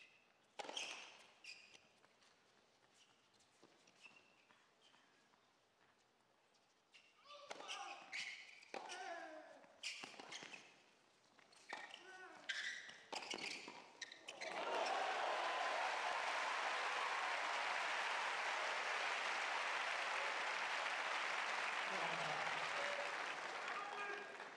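Tennis ball struck by rackets and bouncing on the court during a rally. When the point ends, about two-thirds of the way through, a crowd applauds loudly and steadily for about eight seconds.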